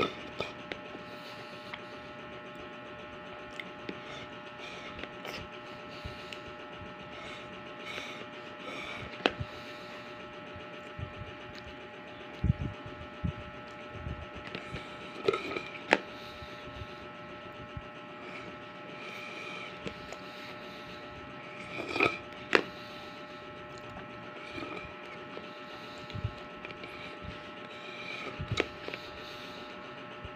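Handling and drinking from a plastic cup of tea with tapioca pearls: scattered short clicks, taps and sips, with a few louder knocks about midway and again after twenty seconds, over a steady electrical hum.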